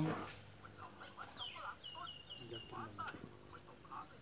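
Faint bird sounds, low clucking like farmyard fowl with a short run of high chirping notes about a second and a half in.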